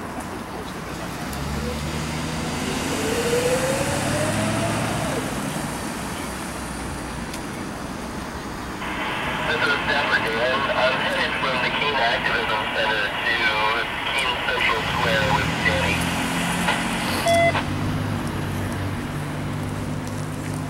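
A motor vehicle runs nearby in the first few seconds, its pitch rising briefly. From about nine seconds a radio transmission of voices comes in, thin and band-limited, and cuts off suddenly about eight seconds later.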